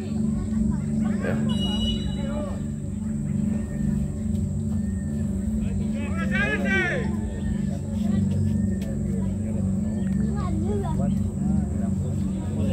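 Distant shouts and voices of players and onlookers over a steady low hum. A brief high chirping sound comes about halfway through.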